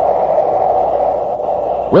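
A loud, steady rushing noise from a sound effect on an old radio recording, with no pitch or tune, easing slightly just before an announcer starts speaking at the very end.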